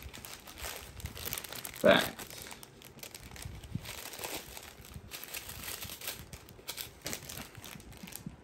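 Small clear plastic zip-lock bags of diamond-painting drills crinkling and crackling irregularly as they are handled and sorted by hand.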